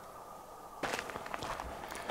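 Footsteps crunching on loose stones and gravel, starting about a second in as a string of irregular crunches.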